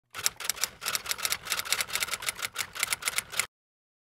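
A quick, uneven run of sharp clicks, about six or seven a second, like keys being typed, that cuts off suddenly about three and a half seconds in.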